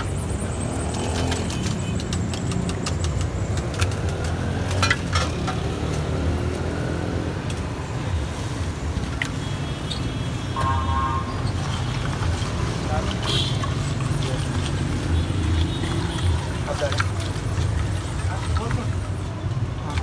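Busy street ambience: a steady low drone with indistinct voices in the background and a few scattered sharp clicks.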